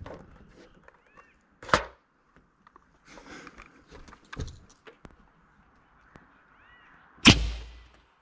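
Air cannon charged to about 180 psi firing a throw ball: a sudden loud blast of released air near the end, with a deep low thump, trailing off in under a second. A single click comes about two seconds in.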